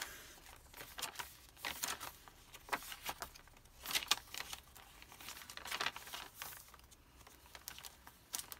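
Paper rustling as the pages of a handmade paper journal are turned and handled, with a few louder rustles spread through.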